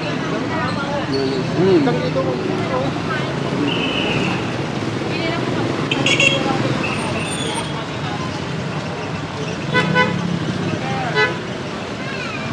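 Busy street traffic with voices in the background and short vehicle-horn toots, the clearest about six and ten seconds in.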